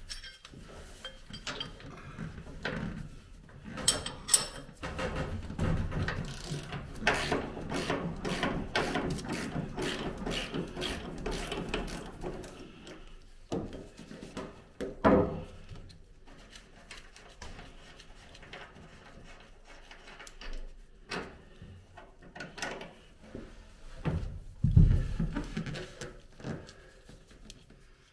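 A ratchet wrench with a socket clicks in quick runs as the last engine mounting bolt is wound out. The clicking thins out later, and there are a couple of louder metallic knocks.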